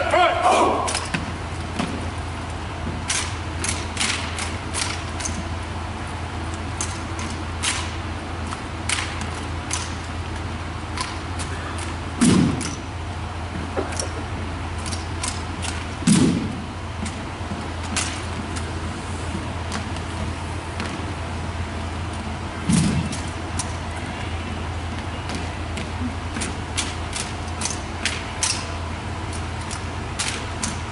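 Rifle drill handling: sharp slaps and clacks of hands striking rifle stocks and slings as the squad moves its rifles, scattered irregularly over a steady low hum. Three heavier, lower-pitched hits stand out, about twelve, sixteen and twenty-three seconds in. Applause dies away at the very start.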